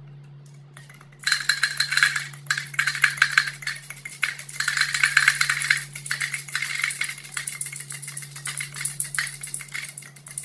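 Small hard candies rattling in a miniature can-shaped container and clattering into a plastic cup as it is shaken, a dense rapid clatter that starts about a second in and keeps going. A steady low hum sits underneath.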